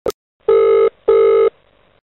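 A click, then two beeps of a telephone line tone, each under half a second with a short gap between them, as a call to the 112 emergency line connects.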